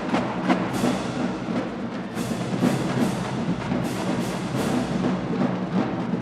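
Marching drumline playing: snare drums and bass drums in a dense groove, with crash cymbals struck together several times, each crash ringing on.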